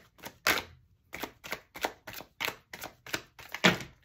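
Tarot deck being shuffled by hand, a run of short sharp card slaps about three a second, the loudest near the end as several cards spill out onto the table.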